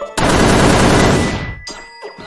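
A string of firecrackers going off: a rapid, loud crackle of many pops lasting about a second and a half, then dying away.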